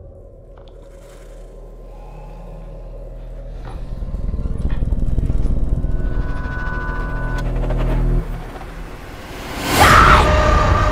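Horror-trailer score: a low droning swell that builds steadily in loudness with a few faint clicks and a thin high tone over it, cuts off suddenly about eight seconds in, then a loud impact hit near the end.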